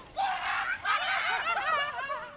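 Several people laughing and shrieking together, their voices sliding up and down and overlapping, starting just after the beginning and fading near the end.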